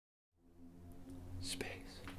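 Room tone with a steady low hum that starts after a moment of total silence, and one short breathy whisper from a person about halfway through.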